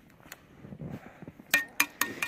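Metal trap chain clinking: two sharp metallic clinks with a short ring, about a second and a half in.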